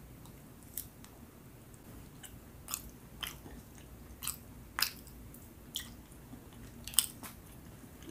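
Close-miked chewing of a soft, sticky brown Filipino rice cake (kakanin): a string of sharp wet mouth clicks and smacks at irregular intervals, the sharpest about seven seconds in.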